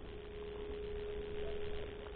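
A faint steady hum on a single unchanging pitch, over a low background rumble.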